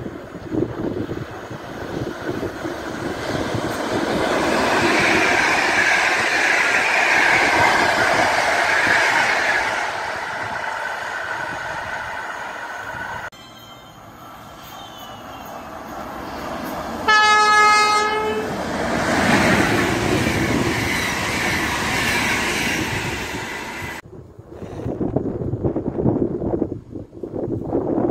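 A Polish EP08 electric locomotive passing at speed, its rushing rail noise swelling and fading. After an edit, an EP09 electric locomotive sounds a single-note horn for about a second, the loudest sound here, and then rushes past.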